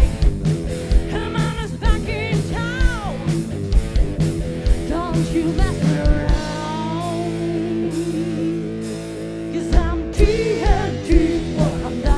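Live rock band playing: drums, electric guitars and keyboards under a singer. About six seconds in the drums drop out for roughly three seconds, leaving held chords, then come back in.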